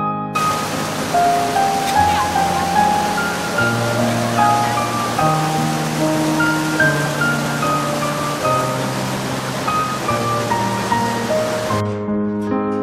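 Slow keyboard music with a steady rush of flowing stream water mixed beneath it; the water sound comes in just after the start and cuts off just before the end.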